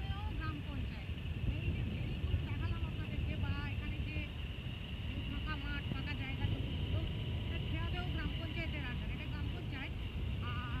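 Steady low rumble of wind and a motorcycle running at road speed, heard from on board, with a thin high steady tone running through it.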